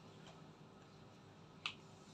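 Quiet room tone with a steady low hum, and one sharp click near the end.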